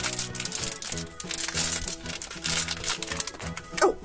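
Thin plastic blind-bag wrapper crinkling in the hands as it is opened, over steady background music.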